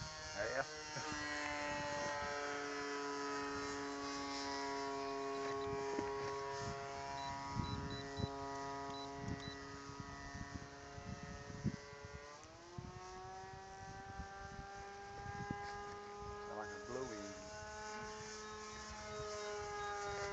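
Electric radio-control model warplane flying overhead: its motor and propeller give a steady buzzing whine that slowly sinks in pitch, then climbs sharply about twelve seconds in and holds at the higher pitch.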